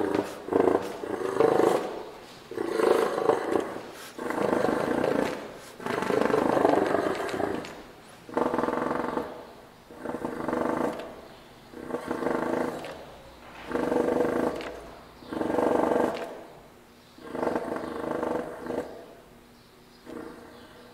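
Solo bassoon played in a run of about ten swelling blown notes, each a second or two long with short breaths between. The first few are rough and noisy; the later ones are more clearly pitched, with a church's echo behind them.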